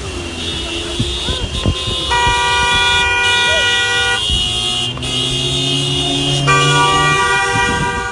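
Vehicle horns honking in two long blasts, one from about two to four seconds in and another from about six and a half seconds to the end, over a low traffic rumble.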